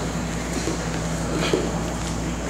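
Steady low room hum, with a few faint brief scuffs and squeaks of bodies and wrestling shoes moving on a wrestling mat.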